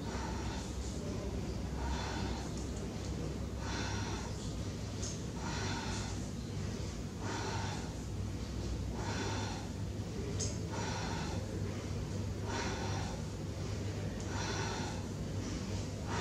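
A woman's loud, rhythmic breaths, about one a second, in time with a lying leg-extension and knee-hug exercise: each stretch of the legs comes with an inhale and each hug of the knees with an exhale.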